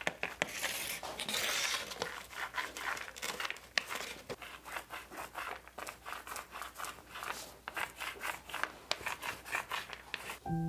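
Small foam paint roller rolled back and forth through wet dark paint, giving a sticky crackle of quick irregular clicks, several a second.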